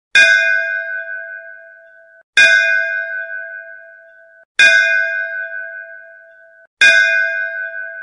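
A bell struck four times at an even pace, about one strike every two seconds. Each stroke rings out clearly and fades, then is cut off just before the next.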